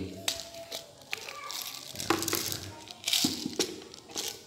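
Light clicks and small rattles from handling a toy pistol and a plastic bottle of 6 mm plastic BBs, with several sharp clicks in the first second and another pair near the end.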